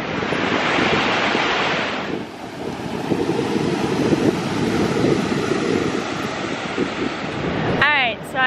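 Ocean surf breaking and washing up the beach, with wind blowing on the microphone. The hiss of the surf is brightest for the first two seconds, after which a lower wind rush dominates.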